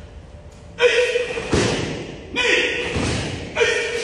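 A person's voice in long held notes, loud from about a second in, with two heavy thumps about a second and a half apart.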